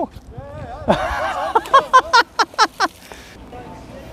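A man's voice: a short 'ja', then a run of quick, evenly spaced syllables, about five a second, that fades into a quieter stretch near the end.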